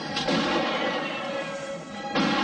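A gunshot just after the start, with ringing after it, over a background music score.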